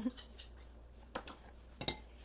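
A few light clinks of tableware, one a little over a second in and a quick pair near the end.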